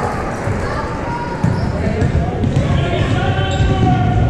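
A basketball being dribbled on a hardwood gym floor, with indistinct shouting voices echoing around the hall.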